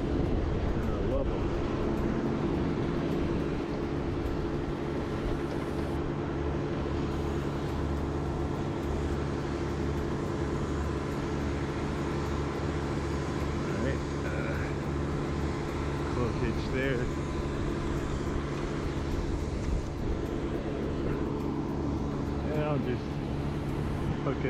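An engine running steadily at idle, a low even drone that holds one pitch throughout, with a few brief fainter sounds over it late on.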